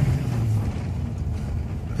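Car engine and road noise heard from inside the cabin while driving close behind another vehicle, a steady low drone that swells a little in the first second.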